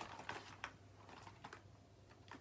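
A few faint, short taps and clicks from small objects being handled, over a low room hum.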